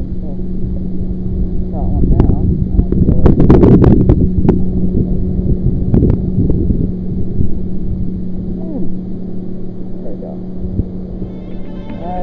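Steady engine hum of a motorboat out on the water, with low wind rumble on the microphone and a few sharp clicks and knocks in the first half. The hum fades out near the end.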